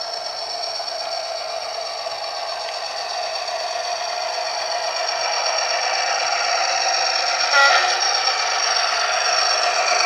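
Model diesel locomotive with a DCC sound decoder approaching, its engine sound and running noise on the rails getting steadily louder as it nears. A brief horn note sounds about seven and a half seconds in.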